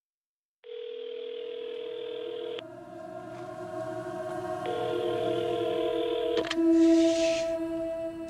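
Telephone ringback tone heard through a handset: two rings, each a steady tone about two seconds long with a pause of about two seconds between them, over a low sustained drone. A sharp click follows the second ring.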